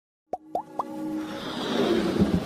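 Intro-jingle sound effects: three quick upward-gliding bloops in the first second, then a swell of noise with faint held tones that builds steadily louder toward the end.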